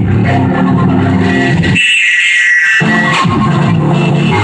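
Music with a steady bass line; the bass cuts out for about a second near the middle, then comes back in.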